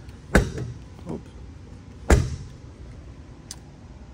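A motorhome's exterior basement compartment door being pushed shut: a sharp bang about a third of a second in, a faint knock near one second, and a louder bang about two seconds in as it latches.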